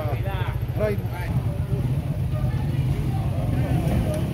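Vehicle engine running, a steady low rumble, with voices talking over it for about the first second.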